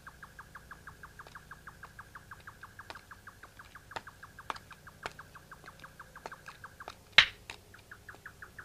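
A steady, even chirping of an insect in the soundtrack's summer ambience, about six or seven short chirps a second. It is broken by a few sharp clicks, the loudest about seven seconds in.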